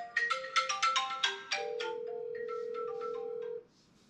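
Mobile phone ringtone playing a melody of short pitched notes, then one long held note. It cuts off suddenly near the end as the call goes unanswered.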